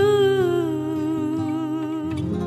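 A woman's voice holding one long sung note that slides down a little about half a second in, then wavers in a gentle vibrato, over a quiet low accompaniment.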